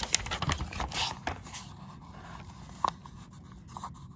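Paperback book page being turned by hand: paper rustling and flapping for about a second and a half, then quieter, with a faint click later on.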